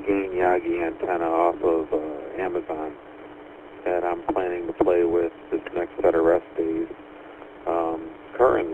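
A man talking in phrases over a two-way radio link, the voice thin and telephone-like, with short pauses between phrases.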